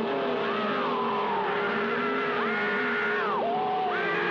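Cartoon soundtrack: a steady held note under a run of high sliding tones that rise, hold and fall, about one a second.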